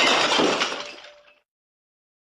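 A glass-smashing sound effect: the crash is already under way and dies away over about a second and a half.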